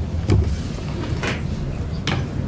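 A few short taps and a low thump, about a third of a second in, from keys pressed on a laptop keyboard, over a steady low room rumble.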